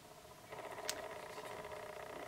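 Quiet room tone with a faint steady hum, and a single small click just before a second in.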